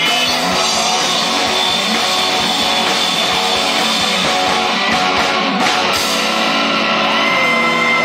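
A live rock band with electric guitars, electric bass, drums and keyboard playing loudly, with a sung vocal. About six seconds in, the low end drops away and long held notes ring on.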